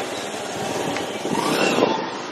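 Motorcycle taxi running along the road with a passenger aboard, its engine heard through rushing wind on the microphone. It swells louder about a second and a half in.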